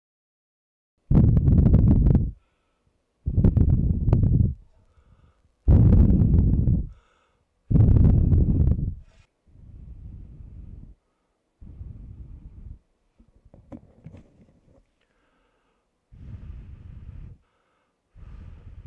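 Breath blown in gusts straight at the capsules of a Comica Traxshot dual shotgun microphone, picked up as wind noise. The first four gusts are loud. The later gusts, through the furry windmuff, come through much more quietly.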